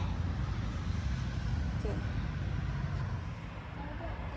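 Steady outdoor background noise, a low rumble with a faint hiss and no distinct events.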